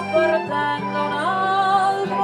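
Traditional Abruzzese folk song played live on piano accordion and acoustic guitar, with a woman's voice holding a long sung note that rises in pitch about a second in. The accordion's bass notes sustain underneath.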